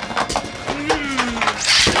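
Spinning Beyblade tops clattering against each other and against the plastic stadium wall: a quick irregular run of sharp clicks and knocks.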